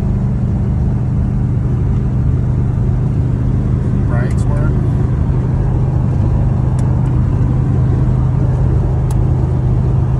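Steady low drone of a 1973 pickup truck's engine and road noise, heard inside the cab while cruising at about 65 mph.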